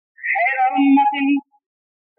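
A man's voice chanting one short, drawn-out phrase in a sung, held pitch, lasting about a second and stopping well before the end, the preacher's melodic delivery of a sermon.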